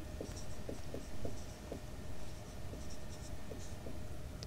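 Whiteboard marker squeaking faintly on a whiteboard in a series of short strokes as a hand writes.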